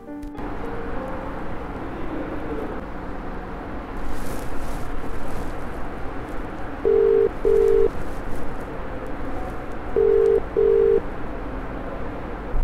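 Telephone ringback tone heard from the phone as an outgoing call waits to be answered: two double rings, each a pair of short beeps, about three seconds apart.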